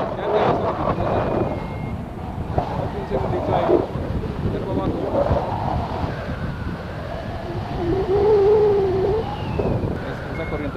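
Wind rushing over the camera microphone on a tandem paraglider in flight just after takeoff, with voices, a few short high beeps about a second in, and a wavering held vocal note near the end.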